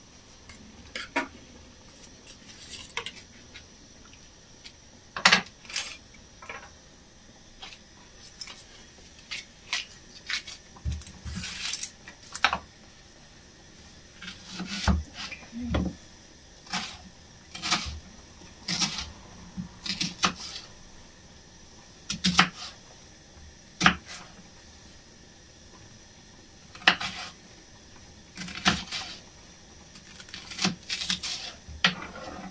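Kitchen knife peeling and cutting a brown onion on a wooden chopping board: irregular clicks and knocks of the blade against the board and onion, a few of them sharper and louder than the rest.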